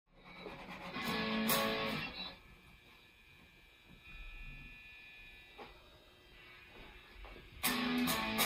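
Guitar chord strummed and left to ring, starting just after the beginning and dying away by about two seconds in. After a quiet stretch with a faint high steady tone, another strummed chord comes in near the end.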